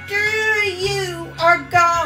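A woman sings into a handheld microphone over instrumental accompaniment. She holds long notes that bend in pitch, with short breaks about halfway and near the end.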